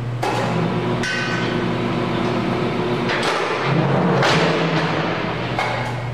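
The loaded sled of an incline impact test machine runs down its steel ramp and drives a wooden pallet into forklift fork tines fitted with a Product Protector attachment. A continuous rolling rumble carries several sharp knocks and is loudest about four seconds in.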